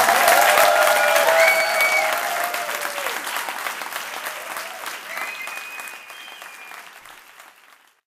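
Concert audience applauding and cheering, the applause dying away steadily toward the end.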